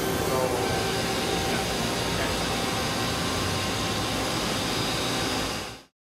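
Oil mist collector on a CNC lathe running: a steady rush of air with a few faint steady tones under it. The sound cuts off suddenly near the end.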